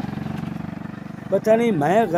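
A motorcycle engine running steadily, fading away over the first second or so.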